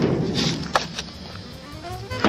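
Door of a 1957 VW Type 2 bus being shut and latched: a slam just before is still dying away, then a few sharp clicks and knocks from the latch and handle.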